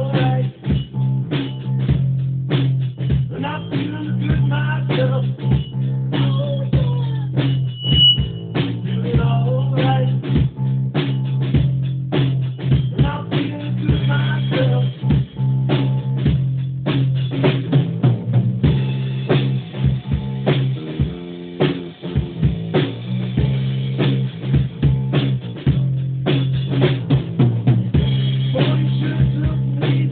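Amplified electric guitar played along with a drum kit in a live jam: a sustained low guitar sound runs under continual drum and cymbal hits.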